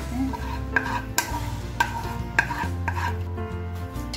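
A spoon scraping hot, freshly melted sugar caramel out of a pan into a stainless-steel bowl. There are four sharp clinks of the spoon against the metal, about every half second.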